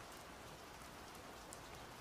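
Faint steady hiss with no distinct events, in a pause between spoken lines.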